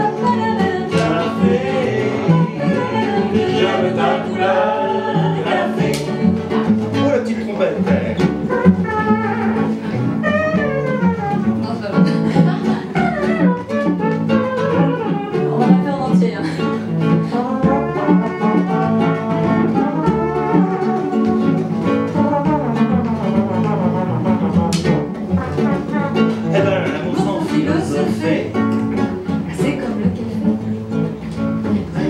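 Live acoustic song performance: singing over a nylon-string classical guitar and a double bass, playing continuously.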